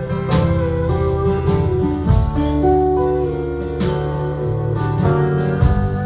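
Live band playing an instrumental passage: acoustic guitars strumming under a lead line of held notes that glide in pitch, with strokes about every two seconds.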